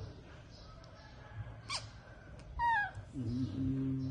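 An infant monkey gives two high squeaks that drop in pitch, the second a louder, quick quavering squeal. A low, drawn-out human voice follows near the end.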